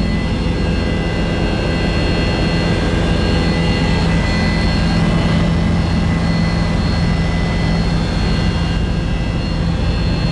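Helicopter in steady cruise heard from inside the cabin: a loud, even drone of engine and rotor with a steady high whine over it.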